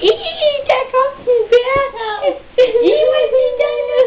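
A high-pitched, childlike voice singing in short phrases, holding and bending its notes, with brief breaks between phrases.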